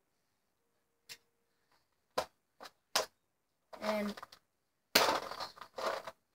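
Handling of a small plastic tackle box: a light click, then three sharp plastic clicks about half a second apart, followed near the end by about a second of loud rustling.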